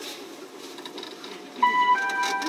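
Steady running rumble of a local train heard from inside the car. About one and a half seconds in, a loud electronic chime starts: clear tones that step to a new pitch. This is the signal that comes before the train's automatic next-station announcement.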